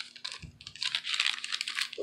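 Paper pages of a handmade junk journal rustling and crinkling as they are turned by hand: a dense run of small crackles, with a soft bump about half a second in.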